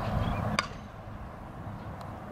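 A softball bat hits a front-tossed softball with one sharp crack about half a second in.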